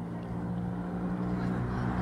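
A motor vehicle's engine running at a steady speed, a low hum that grows slowly louder.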